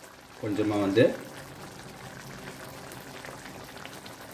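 Thick mushroom masala gravy simmering in a pan, bubbling steadily and faintly. A brief word or voiced sound comes about half a second in.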